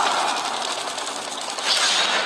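Film sound effects: a fast, dense rattling clatter, with a sudden loud swell near the end.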